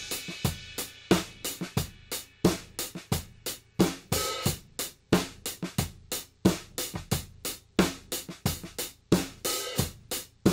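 Drum overhead tracks playing back a steady kit groove: snare and kick hits several times a second under hi-hat and cymbals, with a cymbal crash fading over the first second and another near the end. A de-esser centred near 2 kHz on the overheads, used as a dynamic EQ, is being bypassed for comparison, changing how sharp the snare's stick attack sounds.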